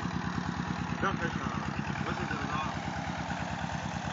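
Stationary single-cylinder flywheel engine driving a tubewell water pump, running steadily with a rapid, even beat.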